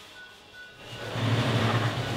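Soft background music, then about a second in an electric sewing machine starts running with a steady, louder motor hum.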